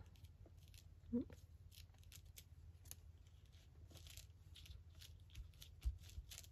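Faint rustling and light ticks of paper and lace being handled and pressed down, over a low steady hum, with a soft knock near the end.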